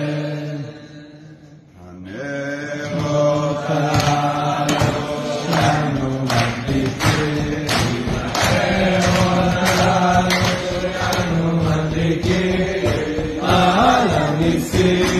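A man's chanted blessing trails off, and after a short lull a group of men starts singing together, joined from about four seconds in by a regular beat of sharp strokes. The singing grows louder and fuller toward the end.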